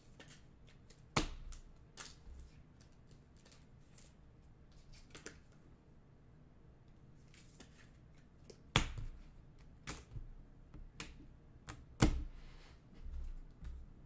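Trading cards and packs handled on a tabletop: scattered light taps and clicks, with three louder knocks about a second in, near nine seconds and about twelve seconds in.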